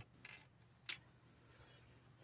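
Near silence, with one short click a little under a second in.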